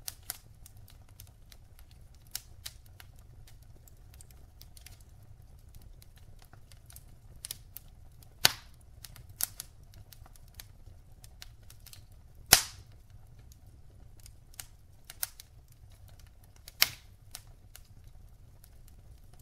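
Wood logs burning in a fireplace, crackling with scattered sharp pops over a faint low rumble. The three loudest pops come about halfway, about two-thirds of the way and near the end.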